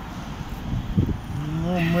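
Steady traffic and street noise, then a man's low, drawn-out hum ('mmm') from about one and a half seconds in as he hesitates before answering.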